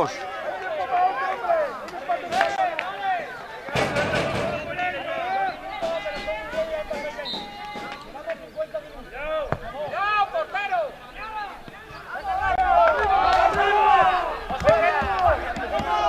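Several voices shouting and calling across a football pitch, overlapping one another, with a brief thud about four seconds in. The shouting grows louder and busier near the end.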